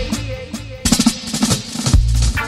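Reggae riddim breaking down to the drums: the bass and vocal drop out, and about a second in a snare drum roll fill plays, leading back into the bass line at the end.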